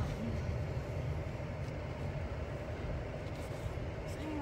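Car air conditioning blowing steadily inside the car cabin, over the low rumble of the car on the road.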